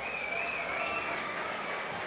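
Audience applauding and clapping after a song, a steady patter with a thin high whistling tone over it in the first half.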